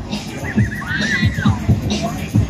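Fairground ride's dance music playing loud with a heavy bass beat. About half a second in, a high wavering cry pulses quickly, then rises and falls for under a second over the music.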